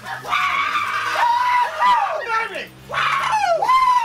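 Men whooping and yelling wordlessly in high-pitched, wavering voices, in several bursts with a short pause a little past the middle.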